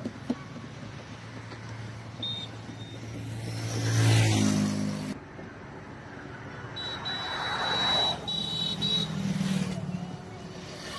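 Road traffic on a highway: motor vehicles passing close by over a low engine hum. One swells to a peak about four seconds in and another near eight seconds, and the sound changes abruptly just after five seconds.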